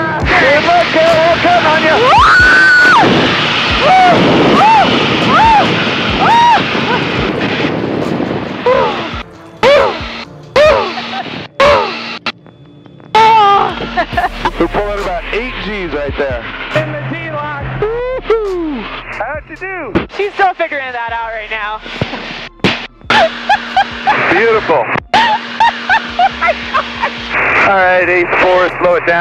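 A woman giggling and crying out in long rising-and-falling squeals, with short breaks between them, over background music.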